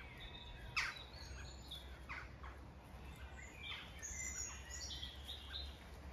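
Wild birds singing and calling, several short chirps and whistles, with one loud, sharp call dropping in pitch about a second in. A faint low rumble runs underneath.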